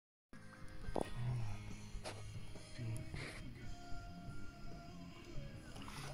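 Background music with sustained low notes.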